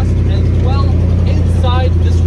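2017 Ram 1500's 5.7-litre Hemi V8 idling steadily just after a remote start, a loud, deep, even exhaust note through an aftermarket exhaust.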